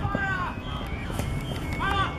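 Shouted calls from people at a youth football match, one right at the start and another near the end, over steady open-air field noise.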